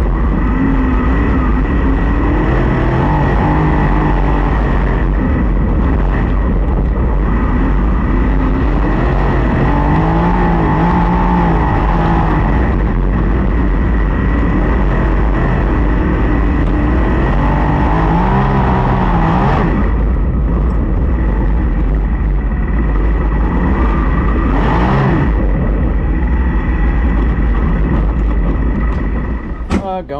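Open-wheel dirt-track race car's engine running, heard from on board the car, its revs rising and falling in waves every few seconds at part throttle.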